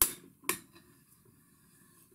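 Two sharp metallic clicks about half a second apart, from a hand tool being worked on a threaded steel rod clamped in a vise.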